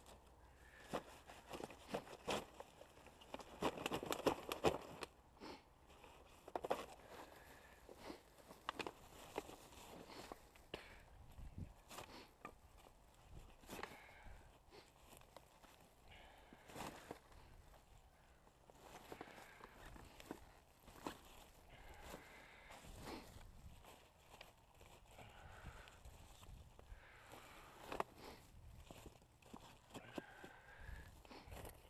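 Litter being gathered by hand into a plastic sack: rustling and crinkling plastic and crackling dry grass, with irregular clicks and shuffling steps. It is busiest around four seconds in.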